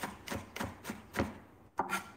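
Rhythmic sharp knocking, about three even strokes a second, with a brief break near the end.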